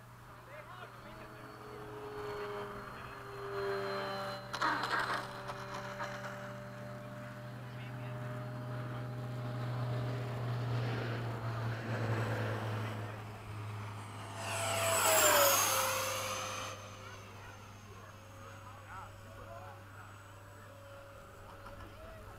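Electric ducted-fan jet model (80 mm fan) whining in flight, with one loud fly-by about fifteen seconds in: the whine swells and its pitch drops as it passes, then fades.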